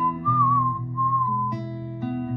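A whistled melody, a single pure tone that wavers and slides between notes, over an acoustic guitar picking chords; a new chord is plucked about one and a half seconds in.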